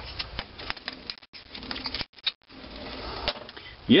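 Scattered light metallic clicks and taps of hands working at a metal lathe's three-jaw chuck, turning the chuck and handling the steel workpiece.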